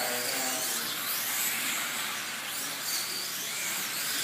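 Slot cars' small electric motors whining as they lap a large multi-lane track, the pitch rising and falling over and over as the cars speed up and slow for the corners.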